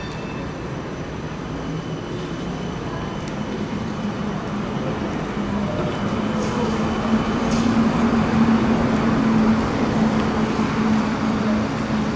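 Hess Swisstrolley 5 articulated trolleybus passing close by. Its electric drive gives a steady low hum that rises slightly in pitch, and the hum and the tyre noise grow louder as it approaches, peaking about eight seconds in.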